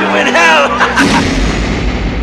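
Raised voices cut off about a second in by a sudden loud boom, which trails off in a long, deep decay.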